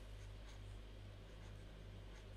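Faint room tone: a low steady electrical hum under a quiet hiss.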